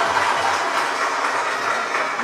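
Steady applause from a crowd, a dense even patter of clapping.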